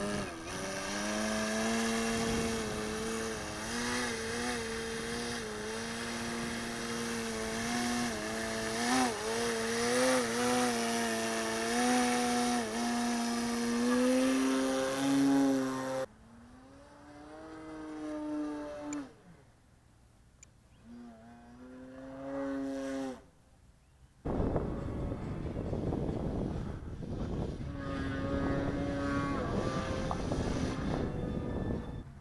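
Skywing Edge RC aerobatic plane's motor and propeller running, its pitch rising and falling as the throttle changes through hovering and tumbling moves. About halfway through the sound drops away, cuts out briefly twice, and then gives way to a steady broad rushing noise with only a faint tone left.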